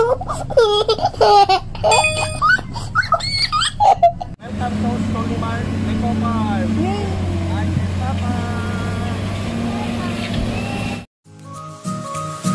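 A small child laughing and squealing, with a short run of bell-like chime tones about two seconds in. Then a steady low hum with a few short sliding chirps over it, cut off near the end as upbeat background music starts.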